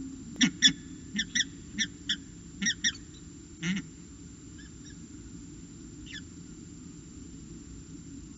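Peregrine falcon calling close by: a quick run of short, harsh notes, mostly in pairs, about nine in the first four seconds with the last one drawn out, then a few faint notes a second or two later. Steady low hum under the calls.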